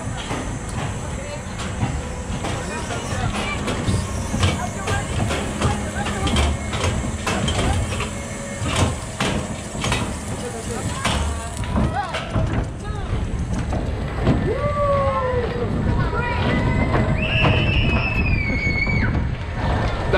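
Onboard sound of a Zamperla Air Force flat ride in motion: a steady low rumble with many short clicks and rattles from the swinging plane-shaped car and its track. Voices call out in the last few seconds.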